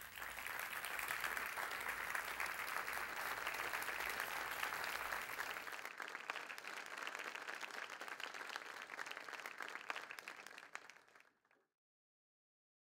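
Audience applauding: dense, steady clapping that fades away near the end.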